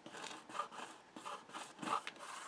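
Hands rubbing and pressing on glued cardstock panels of a folded paper card, a few soft papery rubs with the last, near the end, the loudest.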